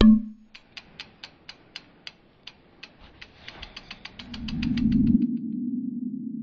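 Logo-reveal sound effect: a sharp hit with a short low tone, then a run of crisp ticks like a ratchet. The ticks thin out, then speed into a fast flurry over a low swelling rumble, and they stop about five seconds in, leaving a steady low drone.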